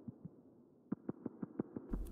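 Faint soft clicks: a few scattered ones, then a quick run of about seven or eight in a second in the second half.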